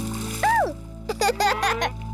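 Cartoon splash sound effects for a whale diving. A short rising-and-falling whoop comes about half a second in, then a quick run of splashy pops and plinks, all over a steady low music drone.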